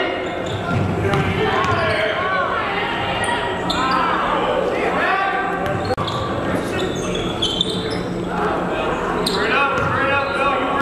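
A basketball being dribbled on a hardwood gym floor, with sneakers giving short squeaks on the court throughout, under players' and spectators' voices.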